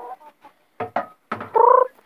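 Domestic hens clucking: a few short clucks about a second in, then a louder, drawn-out call near the end.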